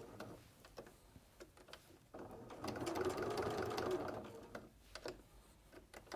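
Domestic electric sewing machine stitching hook-and-loop tape onto a fabric backing in one short run, starting about two seconds in and stopping shortly before the fifth second. A few light clicks come before and after the run.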